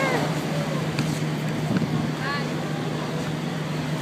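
Steady low hum of road traffic, with faint brief snatches of voices.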